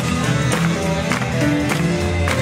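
Live swing jazz from a small band with double bass and drums, playing a lively tune with sharp hits about twice a second.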